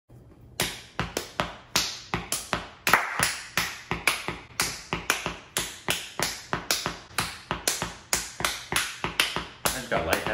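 A steady run of sharp percussive taps, about three to four a second, each dying away quickly.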